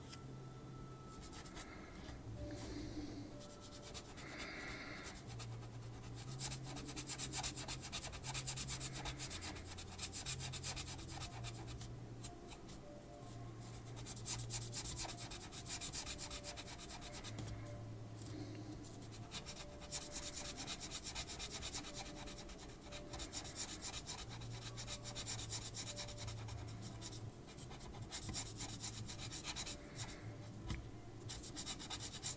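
Felt-tip marker rubbing back and forth on paper, colouring in a large area. The rapid strokes come in stretches of a few seconds each, with short pauses between.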